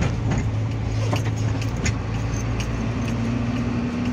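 Steady hum of a car's engine and road noise heard from inside the moving car, with scattered light clicks and rattles in the cabin. A second, higher steady tone joins about three seconds in.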